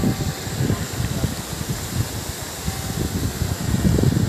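Wind buffeting a phone's microphone: irregular low rumbling gusts over a steady outdoor hiss.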